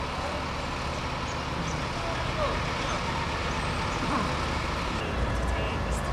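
Diesel bus engines running at a street bus stop with general traffic noise, the low engine rumble growing stronger near the end.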